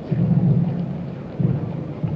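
Low rumbling swells over a steady hiss on an old archival film soundtrack, loudest in the first second and again about a second and a half in.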